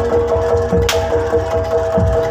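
Live percussion-led street-performance music: drums beat a fast, even rhythm of about five strokes a second under two held high notes of a melody line, with one sharp crack about a second in.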